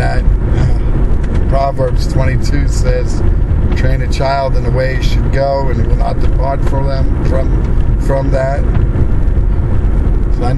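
A person's voice, not picked out as words, over the steady low rumble of a car.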